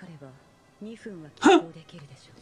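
Speech: a man's short, sharp 'huh' about one and a half seconds in, the loudest sound, just after a brief spoken phrase.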